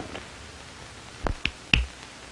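A man's fingers snapping three times in quick succession, a little over a second in, the three sharp snaps spread over about half a second.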